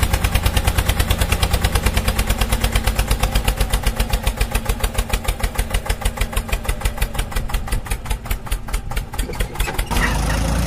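Small engine of a mini ride-on tractor running with an even beat of about six pulses a second, growing a little fainter late on.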